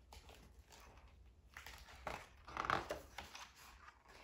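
Paper rustling as a page of a picture book is turned, loudest about two to three seconds in.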